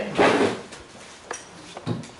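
Clear plastic bags of ingredients rustling and crinkling loudly as they are handled and put down on a table, followed by two short knocks.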